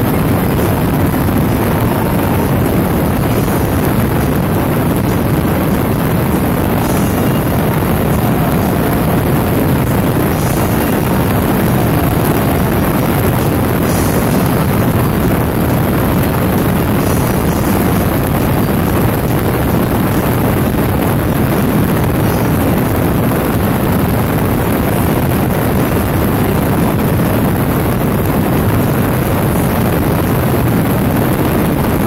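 Steady, loud rush of wind on the microphone over the low drone of a motorcycle cruising at highway speed.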